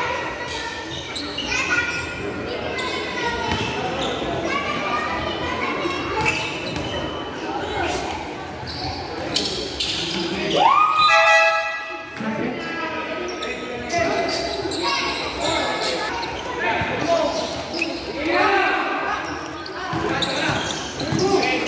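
A basketball bouncing on a hard court, with voices from players and spectators echoing in a large hall. About ten seconds in, one loud call rises in pitch and holds for about a second.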